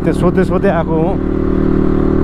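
Dirt bike engine running at a steady speed while being ridden, under a man's voice for the first half; once the talking stops about halfway through, the engine's even note is left on its own.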